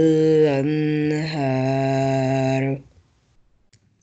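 A man reciting the Quran in a chanted, drawn-out tone with a held vowel, breaking off about three seconds in.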